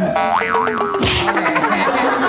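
Cartoon-style comedy sound effect: a quick wobbling boing, then a long tone sliding slowly downward, with a thump about a second in.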